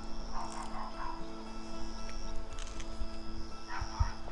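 Background music with sustained tones, over which a dog barks a few times about half a second in and again near the end, with low wind rumble on the microphone.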